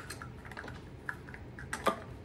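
Plastic kitchen utensils clicking and clattering against each other as a hand sorts through a utensil drawer: a run of light clicks, with a louder clack near the end.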